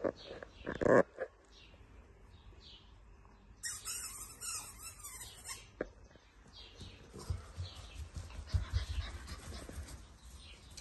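Golden retriever puppy: a high squeal about four seconds in that lasts about two seconds, then soft low thuds near the end as it moves about on the artificial grass.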